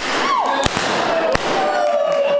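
Handheld confetti cannons going off with three sharp pops about two-thirds of a second apart, mixed with whoops and cheering.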